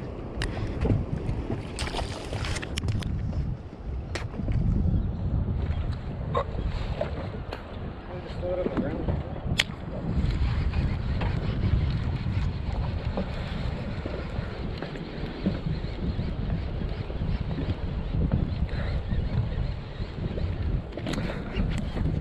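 Wind rumbling on the microphone over water lapping against a drifting fishing boat, with a few sharp clicks from handling a baitcasting reel.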